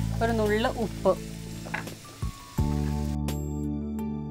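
Cubes of fruit and paneer sizzling in a frying pan as they are stirred, the sizzle fading after two or three seconds, over steady background music.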